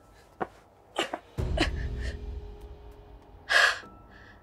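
A few light knocks and a dull low thud, then near the end one short, sharp breathy puff, a person forcefully blowing out air.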